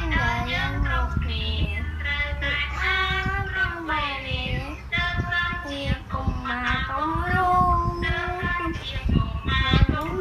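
A young boy singing a song, holding long notes that slide up and down in pitch, over backing music.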